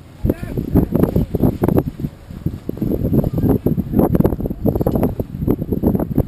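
Irregular low thumping and buffeting from wind and chop hitting a small motor tender and the camera in its waterproof housing, with faint voices now and then.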